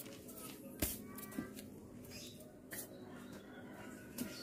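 Faint background sounds with one sharp knock about a second in, followed by a couple of softer clicks.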